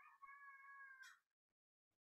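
Near silence, with a faint, high-pitched held call that ends about a second in.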